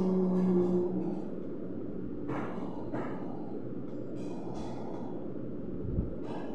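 A man's sung note gliding down and trailing off in the first second. Then steady background noise with a few short, soft breaths.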